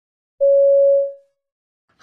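A single electronic beep, one steady mid-pitched tone lasting under a second and fading out: the signal that marks the start of a listening-test extract.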